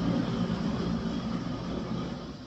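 A loud passing vehicle, a steady noise that slowly fades away as it moves off.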